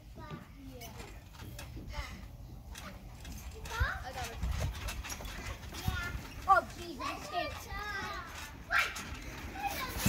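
Children's voices calling out and exclaiming as a child plays on a trampoline, with a few dull thuds from the jumping mat.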